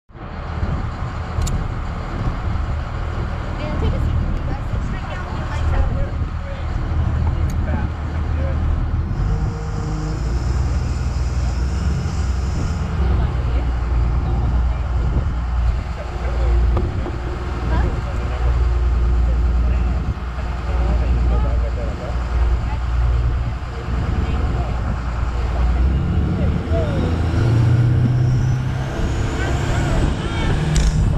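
Boat engine running with a steady low rumble, with wind and water noise on the microphone; near the end a faint rising whine comes in as the boat picks up speed.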